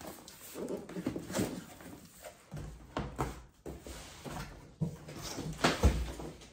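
Cardboard boxes being handled: irregular rustling, scraping and knocks as boxed power tools are shifted in and out of a large shipping carton, with a heavy thump near the end.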